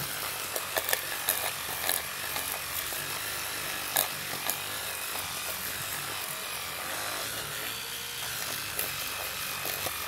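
Electric toothbrush running steadily, its brush head scrubbing battery-leak residue out of the plastic battery compartment of a minidisc player, with a few light clicks as it knocks against the plastic.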